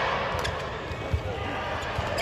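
Badminton rally: the racket strikes the shuttlecock twice, sharp clicks about a second and a half apart, over arena crowd noise and voices.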